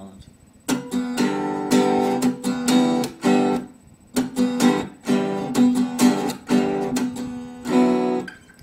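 Acoustic guitar strummed in a quick, rhythmic chord riff. It starts about a second in and has a short break around the middle.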